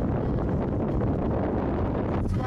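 Steady low rumble of road and wind noise inside a moving car's cabin.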